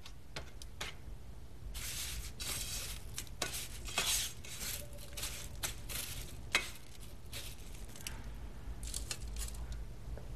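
Crushed potato chips crunching and rustling as chicken strips are pressed and turned in them with tongs, with occasional sharp clicks of the tongs against the dish.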